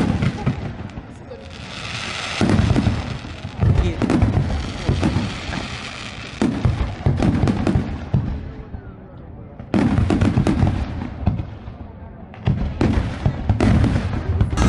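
Aerial fireworks bursting: about six loud booms spread a second or few apart, with crackling and hiss between them, and a brief lull about nine seconds in before the booms resume.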